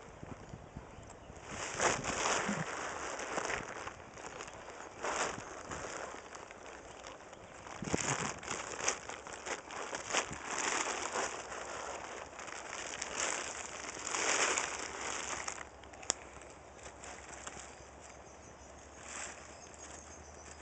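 Plastic tarp crinkling and rustling in irregular bursts as it is handled and pulled up over a horse, with a quieter stretch near the end broken by one sharp click.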